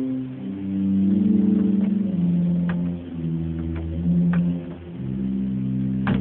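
Bedient tracker pipe organ playing a slow line of sustained low notes with the 8-foot Principal stop drawn, each note held for about a second before moving to the next, with faint clicks between notes.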